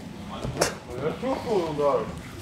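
Indistinct speech, with a single sharp knock about half a second in.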